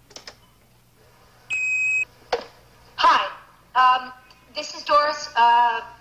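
Answering machine being played back: a click as it starts, then a single steady beep about half a second long, after which a woman's recorded message begins.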